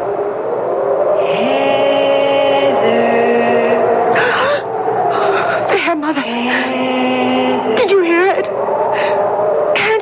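Radio-drama ghost sound effect: an eerie, wordless, voice-like wail of long held tones that step and glide between pitches, several sounding at once, with a wavering stretch near the end.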